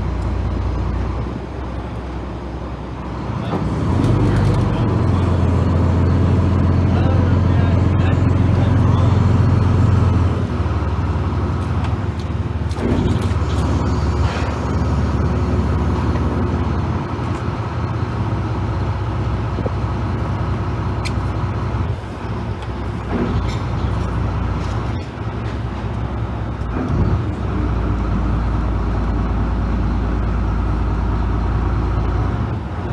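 Lobster boat's inboard diesel engine running at low speed while docking, the throttle brought up for several seconds from about four seconds in, then eased back to a steady rumble, with a few short knocks later.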